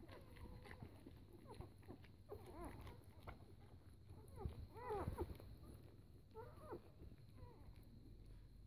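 Four-day-old puppies nursing, giving faint short squeaks and whimpers in small bursts, loudest a little after halfway through.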